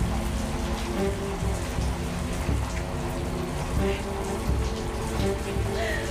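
Shower water spraying and splashing steadily, under background music with long held tones.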